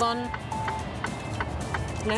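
Background music of held synth tones with a light tick, over the steady low rumble of a moving truck heard inside its cab.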